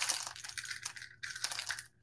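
Wax sealing beads rattling and clinking in a small jar as they are handled, dying away near the end.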